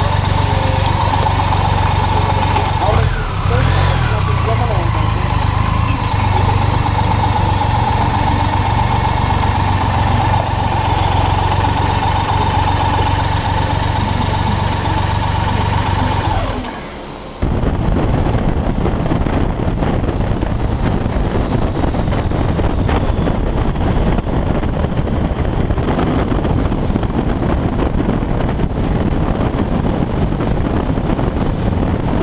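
BMW K75 inline three-cylinder motorcycle engine idling steadily. About seventeen seconds in, the sound changes suddenly to riding at highway speed: the engine running under way with heavy wind noise on the microphone.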